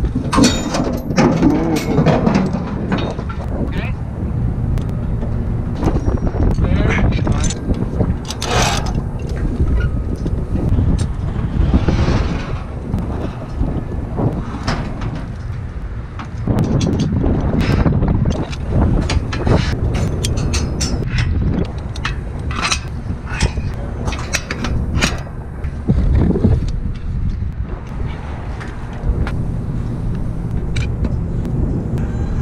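Wind rumbling on the microphone, with scattered short metallic clicks and clanks of hand tools and climbing gear against the steel tower and dish mount.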